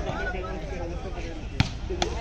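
A volleyball struck by hand: one sharp smack about one and a half seconds in, over the chatter of players and onlookers.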